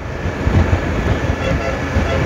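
Motorcycle being ridden on an open road, heard from the rider's seat: a steady low engine drone mixed with wind rush on the microphone.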